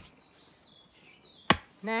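A sledgehammer strikes a wooden tree stake once, a single sharp knock about one and a half seconds in, driving the stake into the ground. A short spoken word follows at the very end.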